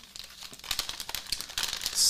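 Keto Chow single-serving shake-mix packets crinkling as they are handled and shuffled, a run of small crackles that picks up about half a second in.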